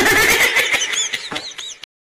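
A shrill animal cry with rising-and-falling squeals, cut off suddenly near the end.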